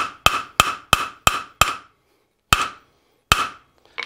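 Hand hammer striking a steel square-bar frame on the anvil, each blow a sharp metallic ring. It goes as a quick run of about six blows at roughly three a second, a pause, then two slower blows, while the half-lap frame is knocked together and tightened. It ends with a light knock as the hammer is set down on the anvil.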